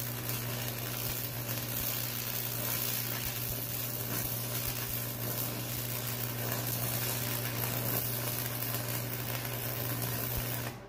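Arc welding a steel blade onto a box blade frame: a steady, unbroken hiss from the arc over a constant low hum.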